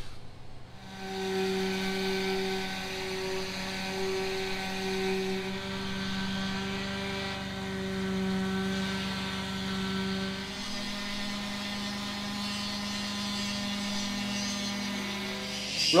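Electric orbital sander running steadily against a steel yacht's painted hull with a constant hum, its tone shifting slightly about ten seconds in.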